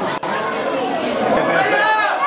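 Many voices talking at once: chatter from people at the ground, with a brief break in the sound about a fifth of a second in.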